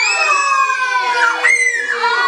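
A group of children shrieking and exclaiming together, many high voices overlapping, with a sharp rising shriek about one and a half seconds in: an excited reaction to foam bursting out of the tubes.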